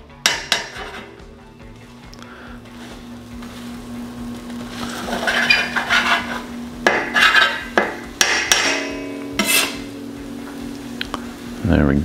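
Stainless steel spatula scraping and tapping on the steel top of an electric griddle as egg is cut and slid up off the surface, with a few sharp metal clinks in the second half.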